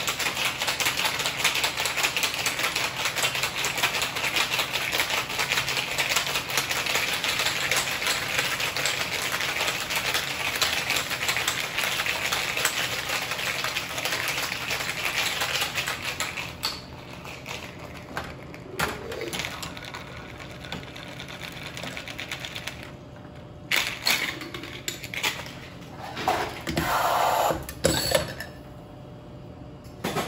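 Ice cubes rattling very rapidly inside a sealed metal cocktail shaker during a vigorous hard shake, which stops about halfway through. Then come a few separate knocks and clanks as the shaker is handled and opened, and a short pour into the glass near the end.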